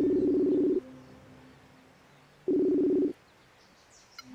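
Outgoing video-call ringing tone from a laptop on a Facebook call, waiting for the other end to pick up. A buzzy, steady tone rings twice, the first ring ending about a second in and a shorter second ring past the halfway mark.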